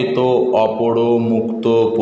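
A man's voice reciting Sanskrit compound words in an intoned, chant-like way, holding the vowels on steady pitches.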